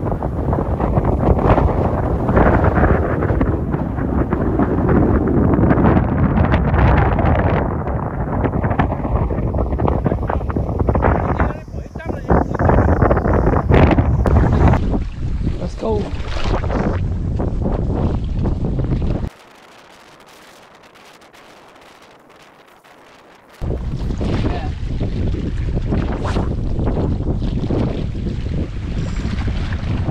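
Strong wind buffeting the microphone, a loud rushing that rises and falls in gusts. It drops away suddenly for about four seconds past the middle, then returns.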